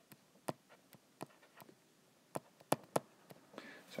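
Stylus tip tapping and clicking on an iPad's glass screen while handwriting a short label: a string of irregular light clicks.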